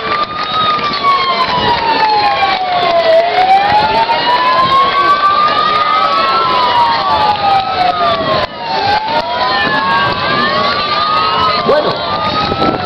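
Several emergency-vehicle sirens wailing together. The loudest one rises and falls slowly, a few seconds up and a few seconds down, while other sirens glide at their own rates above it.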